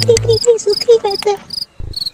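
Cricket-chirp sound effect: quick repeated chirps, about four or five a second, over the tail of a music track that cuts out about half a second in. The chirping stops about one and a half seconds in, and one last short chirp comes near the end.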